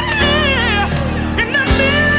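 Gospel song: a solo voice sings ornamented, pitch-bending runs in two short phrases over held chords and bass.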